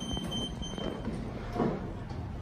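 Kone EcoDisk lift at its floor with the doors open, giving a high electronic beep in short repeated pulses that stops within the first second. A low, steady rumble of background noise runs underneath.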